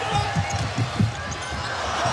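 A basketball being dribbled on the hardwood court, a few low bounces a second, as a player brings the ball up the floor.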